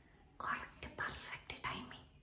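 A woman whispering a few short phrases, breathy and without voice, between her louder spoken lines.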